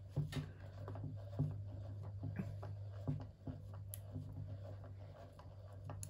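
Treadmill incline gearmotor running slowly under power, a low steady hum with scattered faint ticks. It is turning its limiter cam back off the limit-switch button.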